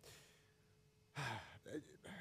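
A man's audible sigh into a close microphone about a second in: a short breathy exhale with a low voice in it, followed by a brief hesitation sound, in a quiet pause of his talk.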